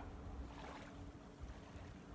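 Faint wind rumbling on a phone microphone, with a faint steady hum beneath it.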